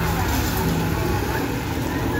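Street traffic with a vehicle engine running close by: a steady low hum that swells and eases.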